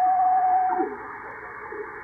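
Steady heterodyne whistle of about 700 Hz, from an unknown electronic device radiating RF, heard through a Yaesu FTdx5000MP HF receiver over sideband band hiss. A little under a second in, the whistle cuts off as the receiver's manual notch filter is set onto it, leaving only receiver hiss.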